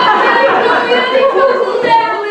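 Many voices talking over one another at once, loud, with no single voice standing out.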